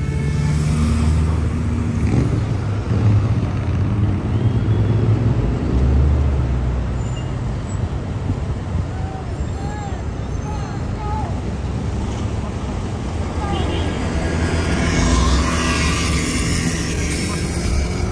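City street traffic heard from inside a moving car: a steady low road and engine rumble with the noise of surrounding traffic, swelling somewhat near the end.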